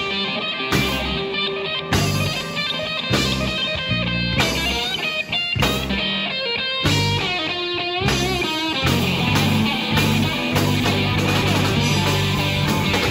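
Live rock trio playing: electric guitar lines that bend in pitch over electric bass and a drum kit, at a steady loud level.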